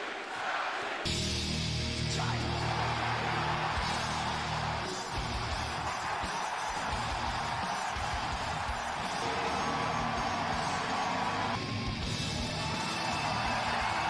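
Wrestling entrance theme music starting about a second in, with an arena crowd cheering over it.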